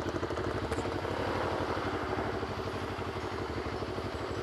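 CFMoto NK400's parallel-twin engine idling steadily in slow traffic.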